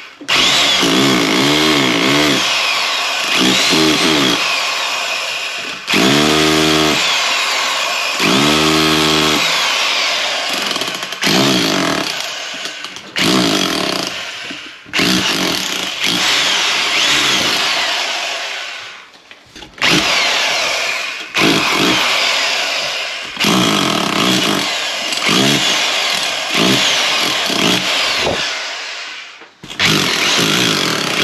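SDS hammer drill in chisel mode hammering a cable chase into a plaster wall, run in repeated bursts of several seconds with short pauses between them.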